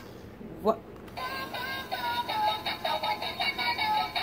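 A battery-powered light-up whale bubble-gun toy playing an electronic tune through its small speaker, a jingle of short repeated notes with a pulsing beat, which starts about a second in once the toy is switched on.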